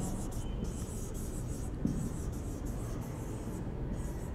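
Pen writing by hand on an interactive whiteboard: a run of irregular, short scratchy strokes as a word is written, stopping shortly before the end.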